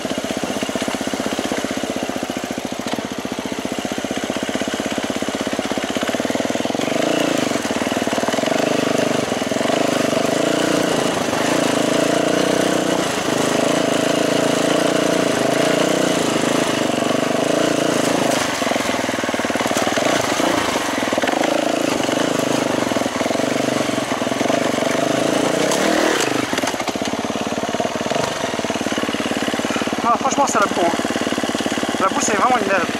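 Enduro dirt bike engine running as the bike is ridden, at a mostly steady pitch and level, with a brief easing of the revs near the end.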